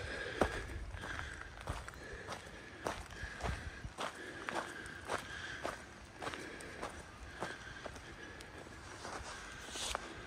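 Footsteps of a hiker walking at a steady pace on a gravel track, just under two steps a second.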